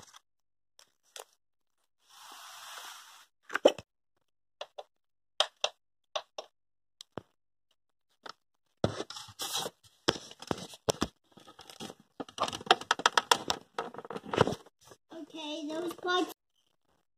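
Hard plastic parts of a Honeywell fan's base being handled during assembly: scattered sharp clicks and knocks, a short rustle about two seconds in, then a dense run of plastic clicks and rattles in the second half.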